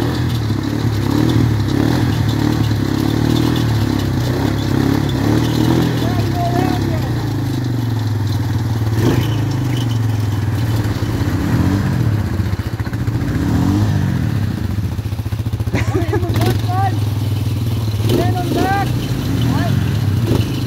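ATV engine running steadily while the quad sits high-centred in a muddy rut, its pitch rising and falling a couple of times around the middle. Voices are heard now and then, mostly near the end.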